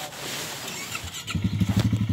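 A small ATV engine cuts in abruptly about two-thirds of the way through and runs at a steady idle with a fast, low pulse, after a second of rushing noise.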